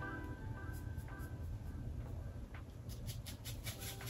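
Quiet background music with held notes. In the last second and a half, a quick run of short scratchy strokes: a paintbrush working acrylic paint on canvas.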